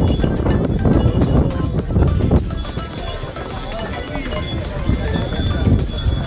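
Donkeys' hooves clip-clopping on stone paving as a string of saddled pack donkeys walks past.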